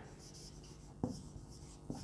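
Marker pen writing on a whiteboard: faint scratchy strokes as a word is written by hand, with a light tap about a second in.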